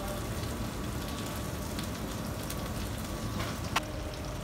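Steady hiss of pans cooking on a lit gas range, with one sharp metallic clink near the end.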